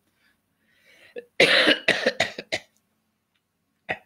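A man coughing: one loud cough about a second and a half in, followed by a few weaker coughs.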